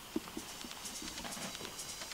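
A quick run of light knocks, about four a second, with sharp ticks over them.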